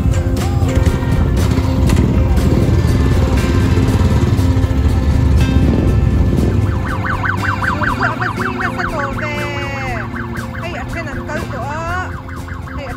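Royal Enfield motorcycle engines running as a rider pulls away, a low pulsing rumble for the first several seconds. After that a rapid warbling, siren-like tone repeats about five times a second over the fading engine sound.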